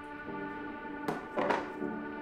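Background music with sustained chords, and two short knocks a little after a second in.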